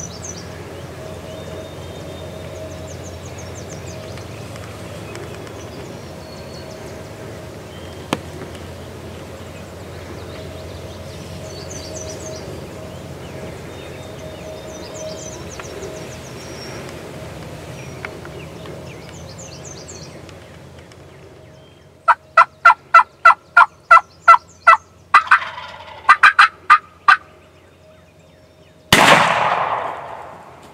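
Wild turkey calling close by: a loud run of about a dozen evenly spaced yelps, about four a second, then a few sharper, irregular notes. About two seconds later a single close shotgun blast rings out. Before that there is only a low steady background with faint distant bird chirps.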